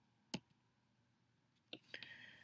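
A single sharp computer mouse click about a third of a second in, then two fainter clicks near the end, over near silence; the click advances the lesson slide.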